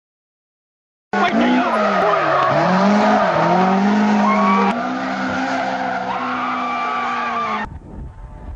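Nissan 120Y drift car's engine revving up and down with tyres squealing as it slides. The sound starts suddenly about a second in, drops in level at a cut near the middle, and breaks off again shortly before the end.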